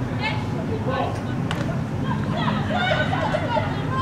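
Distant voices calling out across a football pitch, players and spectators shouting, over a low steady hum.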